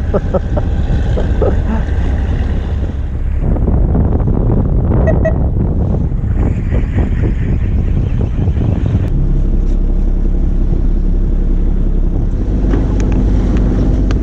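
A fishing boat's engine running, with wind buffeting the microphone and sea noise around the hull. About nine seconds in, the sound changes to a steadier, clearer low engine hum.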